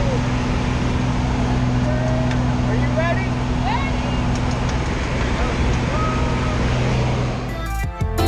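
Small single-engine airplane's engine and propeller drone steadily in the cabin with wind rush, and short voice calls ring out over it. Music starts near the end.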